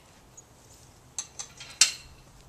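Metal latch of a chain-link gate clinking as it is worked open: two light metallic clicks, then a louder clank near the end.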